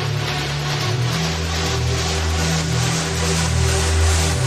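Progressive trance music with a steady beat over a stepping synth bass line. A hissing noise swells in the highest range as it builds.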